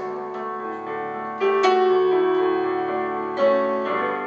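Live band playing an instrumental passage of a country ballad, led by piano chords over bass, with sustained held notes. The band gets louder with a new chord about a second and a half in, and again near the end.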